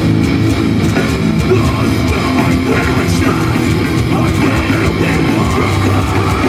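A live heavy metal band playing loud through a stage PA: distorted electric guitars, bass guitar and drum kit, without a break.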